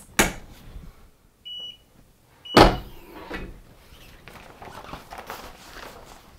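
Automatic clamshell heat press: a clunk as the handle is pulled shut, then two short electronic timer beeps about a second apart. A loud clunk follows the second beep as the press releases and opens at the end of its press cycle, then some low rustling.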